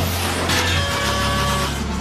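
Cartoon machine sound effect: a loud, steady low mechanical hum with a rushing noise as a round hatch opens in a metal hull, over background music.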